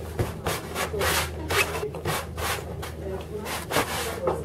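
Paint being rubbed and scrubbed across a large canvas on an easel in quick repeated strokes, about three a second.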